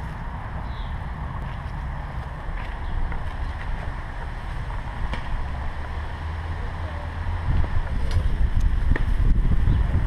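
Wind rumbling on the action camera's microphone, with a few light handling knocks, growing louder over the last couple of seconds.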